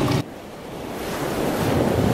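Rushing surf-like water noise, even and hissy, that swells slowly after an abrupt cut about a quarter second in.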